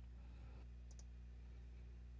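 Near silence: a faint steady electrical hum, with a single faint click about a second in.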